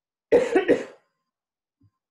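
A person's short vocal burst of three quick, breathy pulses in under a second.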